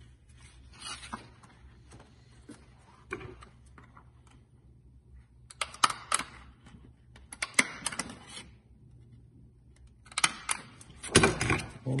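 A hand stapler driving staples through Velcro and a laminated plastic sheet: sharp clacks in small clusters about six seconds in, near eight seconds and twice near the end, the last the loudest, with plastic rustling between.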